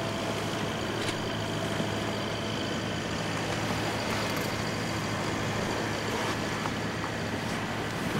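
A steady low hum under a wash of wind and water noise, unchanging throughout, with one faint click about a second in.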